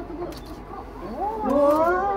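Asian elephant calling: a drawn-out, pitched call that rises and bends, starting about a second in and loudest near the end.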